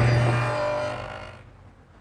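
Table saw with a stacked dado head running with a steady hum, fading away over the second half.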